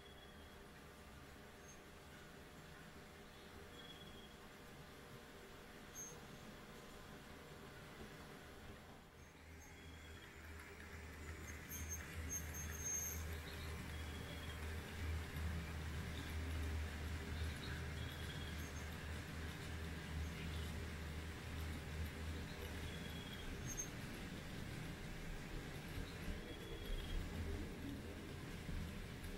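N scale model train running on the layout: a faint electric-motor hum and the rumble of small wheels on the rails. It grows louder about ten seconds in as the train comes close.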